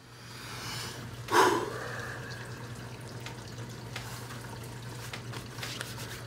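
Room tone in a restaurant dining room: a steady low hum, a few faint small clicks, and one brief louder noise about a second in.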